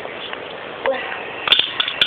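Light clicks and a brief clatter of small hard plastic toy pieces being handled, with sharper clicks from about one and a half seconds in.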